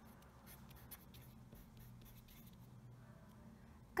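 A marker pen writing on paper: faint, irregular short strokes as a few words are written.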